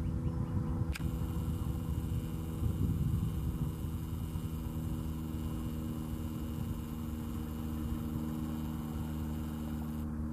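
A steady low mechanical hum made of several fixed tones, with a faint higher hiss joining about a second in.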